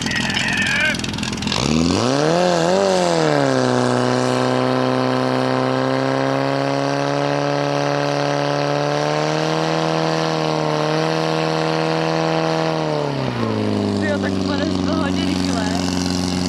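Portable fire pump's engine revving up about two seconds in, with two quick surges, then held at high steady revs while it pumps water out into the delivery hoses. Near the end it drops to a lower, steady speed.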